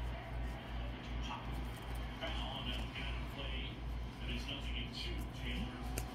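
Baseball trading cards slid and flipped one by one in the hands, with faint scattered scrapes of card on card, over a low hum that throbs about four times a second.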